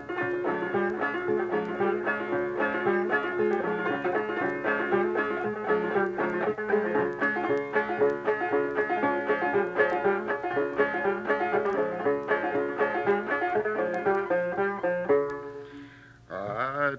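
Old-time banjo playing an instrumental break: a quick, even stream of plucked notes over a steady ringing low note. It drops away just before the end.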